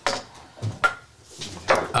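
Glass tasting glasses knocked and set down on a wooden bar top: a few short clinks and knocks, one with a brief ring about a second in.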